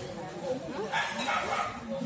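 Faint, indistinct talking from people in a large room, with no clear words.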